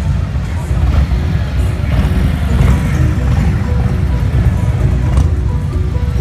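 Large touring motorcycles' V-twin engines rumbling steadily at low speed as they ride slowly past close by, with music playing in the background.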